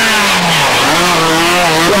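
Rally car engine running hard as the car passes at speed. The note falls in pitch over the first part of the second, then holds steady.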